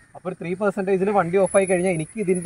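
A person speaking continuously, with no other sound standing out.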